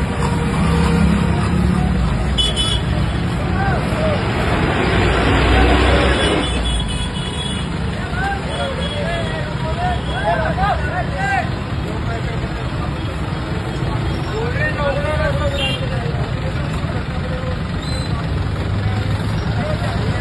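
Busy city street traffic: bus, motorcycle and rickshaw engines running close by with people talking. The noise swells about five seconds in, then drops back to a steady rumble.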